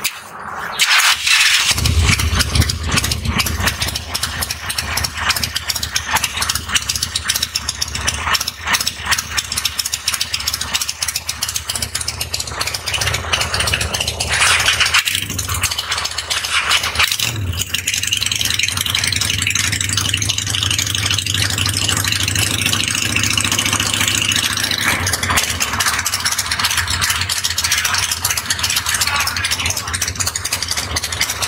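A Harley-Davidson Evo V-twin motorcycle engine starts about a second in and runs loudly, its firing pulses uneven in loudness, until it stops about halfway through. Soon after, a Honda V-twin cruiser starts up and idles steadily to the end, in a loudness comparison between the two bikes.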